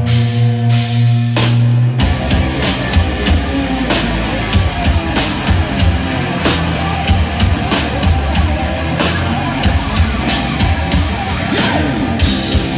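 Hard rock band playing live: a held guitar and bass chord rings for the first two seconds, then the drums come in and the full band plays a driving beat.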